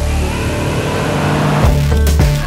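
Instrumental passage of a yoik track: a held low bass note under a hissing, swelling wash of noise, with no voice. Rhythmic beats come back in near the end.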